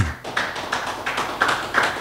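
Church congregation clapping their hands in praise, many claps blending into a dense, steady patter.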